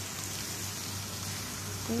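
Onions and spices sizzling steadily in a hot wok just wetted with liquid, an even hiss with a low hum underneath.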